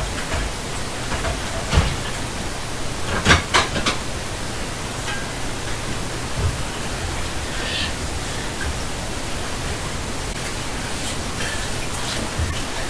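Ghost-box software output: a steady hiss of static, broken by a few short blips and fragments about two and three and a half seconds in.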